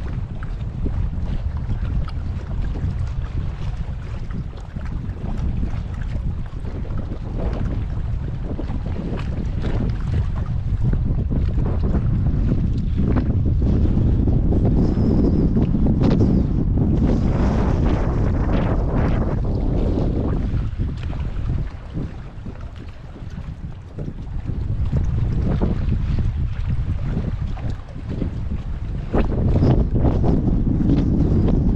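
Wind buffeting the microphone on an open bass boat, gusting up and down, with small waves slapping the hull. It is loudest through the middle and drops away briefly about two-thirds of the way in.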